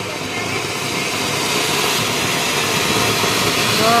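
Ground fountain firework (anar) spraying sparks with a loud, steady hiss that swells slightly toward the end.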